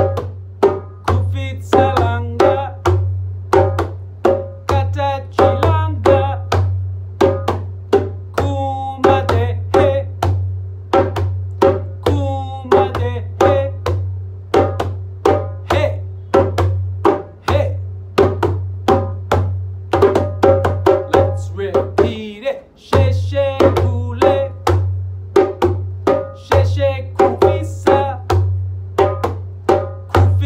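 A djembe-style hand drum played with bare hands in a steady, repeating groove, with a man singing short call lines of a call-and-response chant, leaving pauses between them for the echo.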